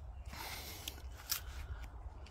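Faint rustling and a few light clicks over a low steady rumble.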